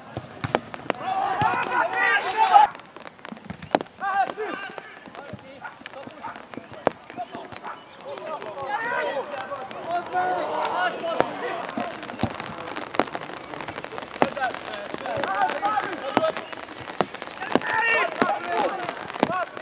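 Football players shouting and calling to each other on the pitch, with scattered sharp clicks and knocks.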